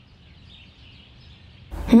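Quiet background ambience with faint, scattered bird chirps; a woman's voice comes in near the end.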